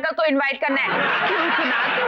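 Laughter from many people together, a sitcom audience or laugh track, building up about a second in after a brief spoken bit.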